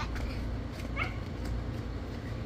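A young girl's short rising squeal, followed about a second later by a brief rising yelp, over a steady low rumble.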